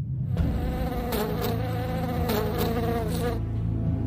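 Steady buzzing of flies, a cartoon sound effect, with a few faint ticks partway through.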